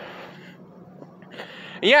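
Low background noise with a faint steady hum, then a short breath just before a man's voice starts near the end.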